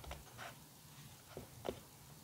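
Very quiet pause with a faint low hum and two faint short clicks about a second and a half in.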